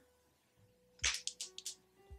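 Makeup being handled, heard as a quick run of four or five small, sharp clicks about a second in, after a moment of near silence.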